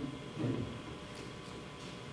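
A pause in speech: quiet room tone, with a brief faint murmur from a voice about half a second in.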